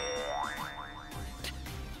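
Background music under a comic sound effect: a run of overlapping rising pitch slides through the first second and a half.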